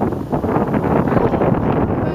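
Wind blowing across the camera's microphone, a loud, steady rushing noise.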